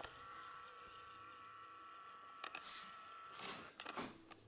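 Quiet room tone with a faint steady high hum, a couple of soft clicks and a brief rustle near the end.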